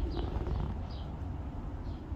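A few faint, short bird chirps, high and falling, over a steady low rumble.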